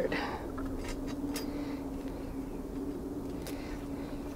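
A steady low hum, with a few faint rustles and clicks as garden netting and plastic mesh are pulled aside.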